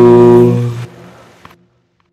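Unaccompanied solo voice holding the final sung note of the song, the word 'no', which fades out under a second in and leaves silence as the track ends.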